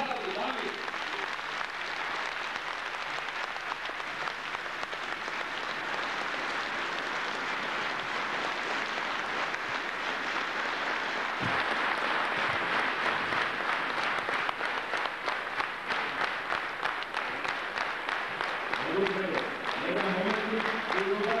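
A large audience applauding in a reverberant theatre hall, many hands clapping at once. About halfway through, the clapping grows more even and rhythmic.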